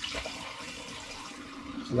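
Steeped elderflower tea poured in a steady stream from a stainless steel saucepan through a mesh sieve, splashing continuously into the vessel below.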